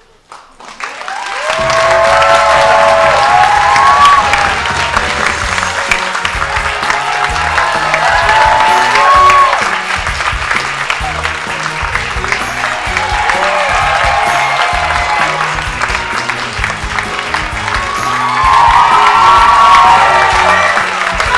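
Audience applause continues throughout while upbeat music with a pulsing bass line starts about a second and a half in and plays loudly over it.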